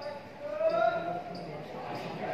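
Marker writing on a whiteboard, its tip knocking against the board, with a sharp tap near the end, under a woman's voice.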